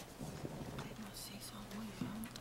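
Faint, low murmured voices and whispering in a meeting room.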